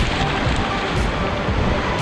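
Wind buffeting the microphone over the wash of shallow surf, a steady rushing noise, with background music faintly under it.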